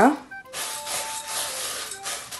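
Dry-roasted coriander seeds and split dal rustling as a hand sweeps through them on a steel plate: a dry, even hiss lasting about a second and a half.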